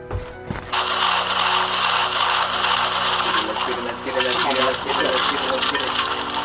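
Video game sound from a TV: a loud, dense clatter of rapid crackling noise that starts abruptly about a second in, over steady background music.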